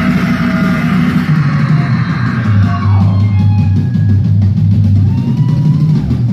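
Live rock band playing loud and steady, with electric guitars, bass and a drum kit.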